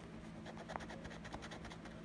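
A coin scraping the coating off a scratch-off lottery ticket: a run of faint, irregular short scratching strokes.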